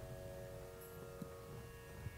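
Faint steady hum made of several held tones, with one soft tick a little past halfway.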